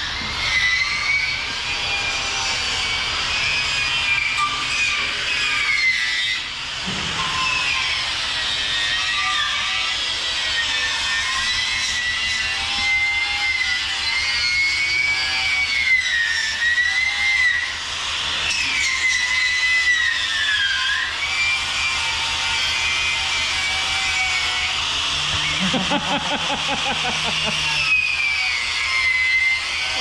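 Angle grinder with a wire wheel running against a steel truck chassis rail, scouring off dirt and old coating. Its whine wavers up and down as the wheel is pressed into and eased off the metal.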